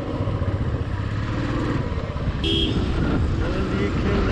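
Royal Enfield Classic 350's single-cylinder engine running steadily under way, with wind noise on the microphone. A short beep about two and a half seconds in.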